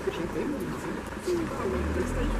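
Quiet, indistinct talking between a woman and children, too low for any words to be made out.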